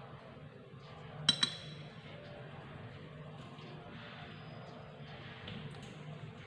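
Small steel tweezers clinking twice in quick succession about a second in, a short metallic ring, as they are set down among the craft tools; otherwise only faint handling of paper.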